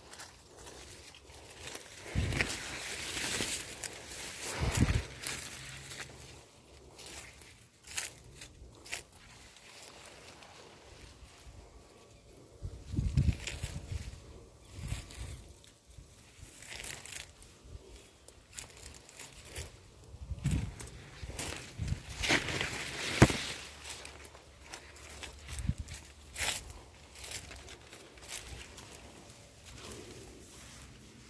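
Footsteps and rustling through a cornfield: dry leaves and twigs crunching underfoot and corn leaves brushing past, with irregular knocks and a few dull thumps.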